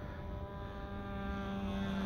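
Nitro glow engine of a radio-controlled model plane running steadily in flight, its propeller note drifting slightly lower in pitch.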